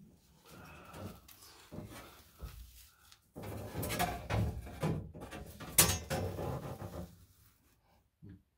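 Irregular knocks, scrapes and rustling of someone handling things and moving about inside a car's roll cage, busier in the second half, with one sharp click a little before six seconds in.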